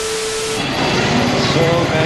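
A TV-static glitch transition: hiss with a steady beep tone for about half a second. Then continuous street traffic noise heard from an open electric rickshaw, with people's voices in it.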